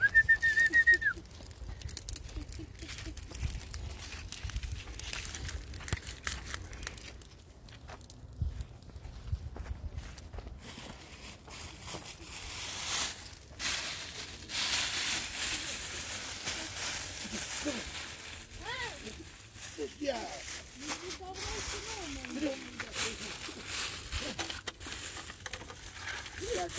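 A clear plastic bag is handled, crinkling and rustling, amid scattered knocks and clatter. A short high whistle-like tone sounds at the very start, and low voices come in during the second half.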